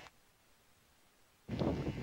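Near silence for about a second and a half, then a man starts talking near the end.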